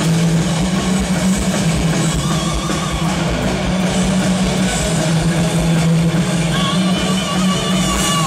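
A folk-metal band playing live and loud: electric guitars, bass and drum kit in a dense, continuous wall of sound, recorded from within the audience. A wavering high melody line rises above it about two seconds in and again near the end.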